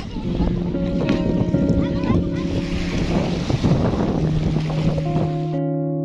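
Small waves washing onto a stony shore with wind buffeting the microphone, over guitar background music; the shore sound cuts off suddenly near the end, leaving the music alone.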